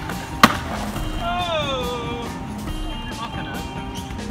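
A skateboard comes down on concrete with one sharp clack about half a second in, as a rail trick is landed. After it a pitched tone slides downward, then a steady high tone is held.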